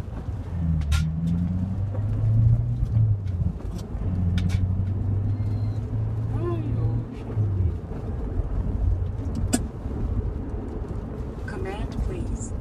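Corvette C7 Stingray's 6.2-litre V8 heard from inside the cabin while driving. The engine note rises about a second in after a gear change, holds steady, then drops away about two-thirds of the way through.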